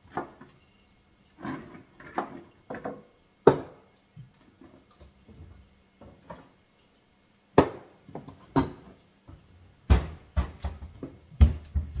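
Scattered knocks and clunks of a plastic blender jar and glass jars being handled and set down on a kitchen counter. The loudest knock is about three and a half seconds in, with a run of clunks in the last few seconds as the blender jar is lifted off its base. A faint steady hum lies underneath.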